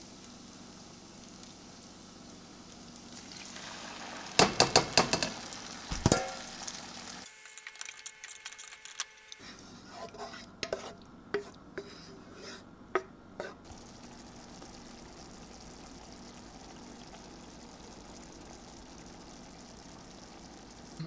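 Chopped onions sizzling in butter in a frying pan; a few seconds in, crushed tomatoes are poured in with several loud knocks and scrapes of the bowl against the pan. Later a wooden spoon stirs the sauce with a run of clicks and knocks against the pan, and it settles into a steady sizzle.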